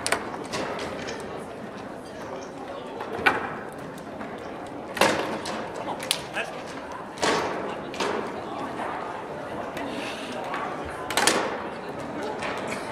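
Sharp knocks from a foosball table in play: the ball struck by the players' figures and hitting the table's walls, every second or two. The loudest knocks come about three seconds in and near the end, over a murmur of voices in a large hall.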